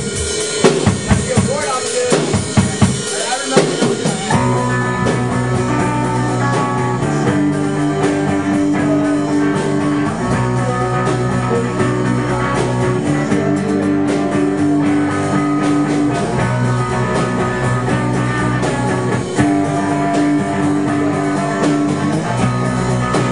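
Live rock band playing: drums alone for about four seconds, then guitars and bass come in with steady held chords over the drum beat.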